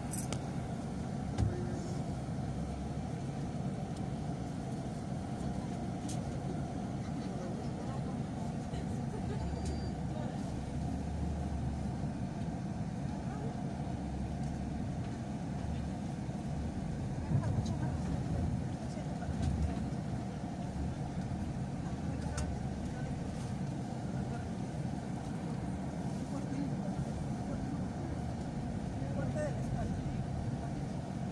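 Steady low rumble of a motor vehicle engine running, with street traffic noise and a few small knocks.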